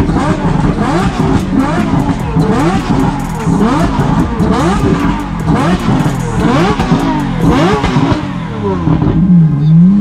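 Supercar engine revved hard in quick repeated blips, its pitch jumping up and down, with sharp crackles over the top. Near the end the car pulls away and the engine note climbs steadily under acceleration.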